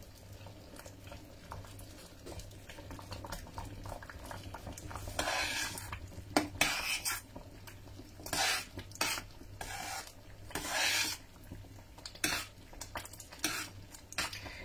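Metal spoon stirring thick corn and tapioca-pearl pudding in a stainless-steel saucepan, scraping against the pot. The stirring is faint at first, then comes in a series of short scrapes from about five seconds in. A low steady hum runs underneath.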